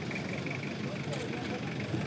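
Steady outdoor background noise with faint voices talking in the distance and a faint steady high tone.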